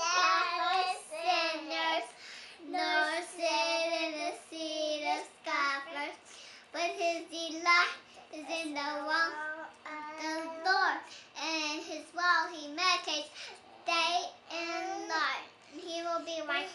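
A young girl's high voice singing a memorized Bible verse in a sing-song way, phrase by phrase with short breaks.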